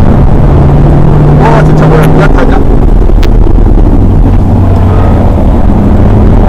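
BMW 120d's four-cylinder turbodiesel engine running under way, heard inside the cabin over loud road and wind noise; its steady drone drops in pitch a couple of seconds in and climbs slightly again near the end.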